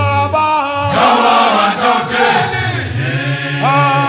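Male a cappella choir singing in the Zulu isicathamiya style: low bass voices hold long notes under higher voices that slide between pitches.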